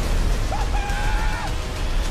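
Film-trailer mix of music and sound effects: a heavy bass under dense crashing noise. A held whining tone comes in about half a second in and lasts about a second.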